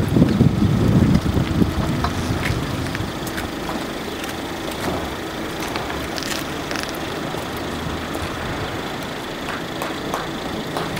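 A low rumble on the microphone for about the first second and a half, then steady outdoor background noise with scattered faint clicks and taps as a crowd moves about on foot.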